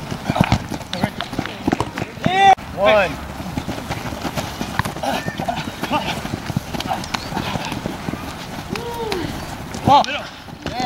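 Players' voices shouting briefly, twice in a row about two and a half seconds in and once more near the end, over a rapid patter of thuds and clicks as a flag football play is run on grass.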